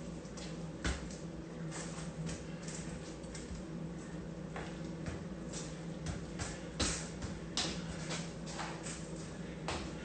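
Soccer ball footwork on a concrete floor: the ball rolled under the sole and stopped with the foot on top, giving irregular light taps and scuffs of shoes and ball, a few each second, over a steady low hum.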